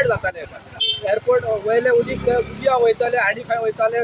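A man talking continuously in a local language.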